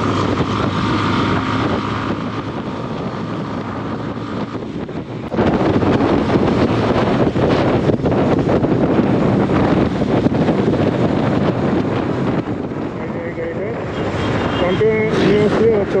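Bajaj Avenger 160 Street motorcycle under way, its engine largely covered by wind rushing over the camera microphone. The wind noise jumps louder about five seconds in. A voice comes in near the end.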